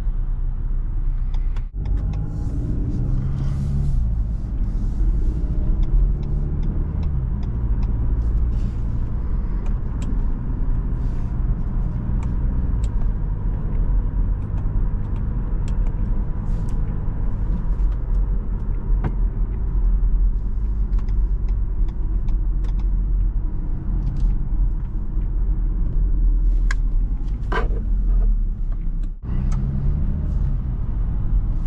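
Mitsubishi ASX's 1.3-litre four-cylinder petrol engine and tyre and road noise heard from inside the cabin while driving in city traffic. The engine note climbs twice in the first seven seconds as the car accelerates through the gears of its manual gearbox.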